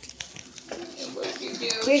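A few light clicks and knocks, then soft talking that grows into clear speech near the end.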